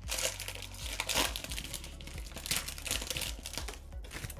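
Foil wrapper of a Mosaic football trading-card pack crinkling as it is torn and peeled open by hand, in several short bursts.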